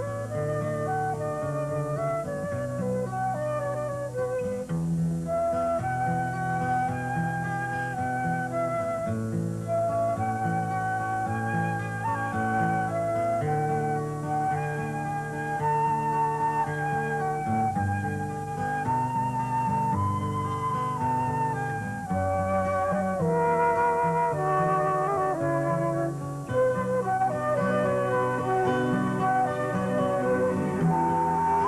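Instrumental background music: a flute melody moving note by note over held low notes.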